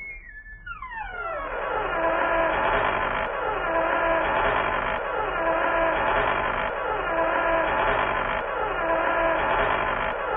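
Trap beat intro, muffled with its highs filtered off: a looping pad of sustained chords with a downward pitch sweep about every 1.7 seconds, fading in over the first two seconds.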